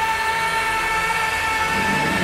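Background music holding one long sustained chord.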